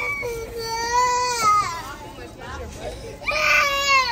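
A little girl crying angrily in two long wails, the first over the first second and a half and the second near the end: an upset, cross tantrum cry.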